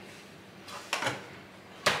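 Household items being moved about on a kitchen counter: a short scrape about a second in, then a sharp knock near the end as something is set down.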